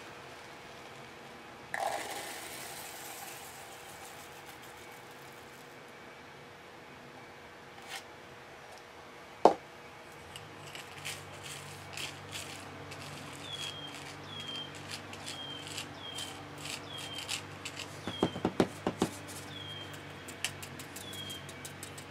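Thin epoxy mixed with lead pellets being poured into a small plastic mold, a soft pour about two seconds in, then a wooden stick clicking and scraping among the lead pellets, with a sharp knock near the middle and a run of louder clicks near the end. From a little past halfway, a short high chirp that falls in pitch repeats about every two-thirds of a second.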